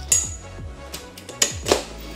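Several light metallic clicks and taps as aluminium bars are pulled out of the sockets of a folding hammock chair's frame, over background music.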